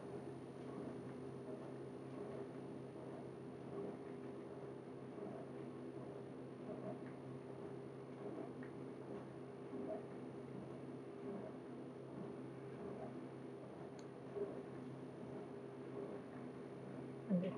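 Quiet room tone with a steady low hum and a single faint click near the end.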